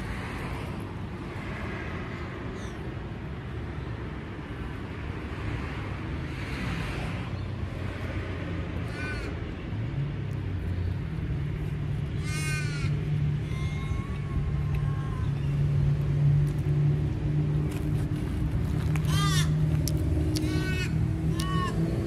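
Crows cawing several times, in drawn-out calls that fall in pitch, over a low steady hum that sets in about halfway through.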